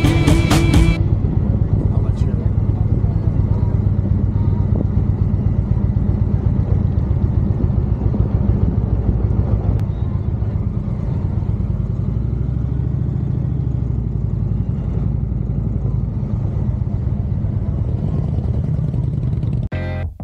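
Motorcycle engine running steadily at road speed, with wind rushing over a bike-mounted microphone. A music track cuts off about a second in.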